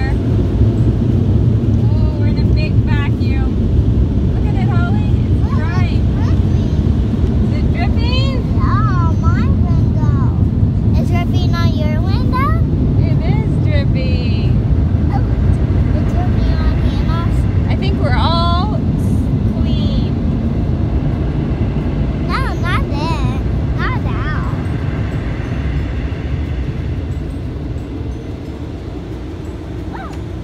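Automatic car wash air dryers blowing on the car, heard from inside the cabin as a loud steady low roar that eases off over the last few seconds.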